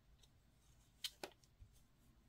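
Near silence with a couple of faint, short clicks about a second in, from a metal crochet hook and yarn being worked by hand.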